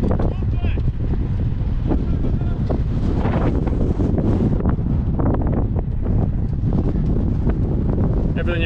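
Heavy wind buffeting a moving camera's microphone as a low, steady rumble, with faint voices at times.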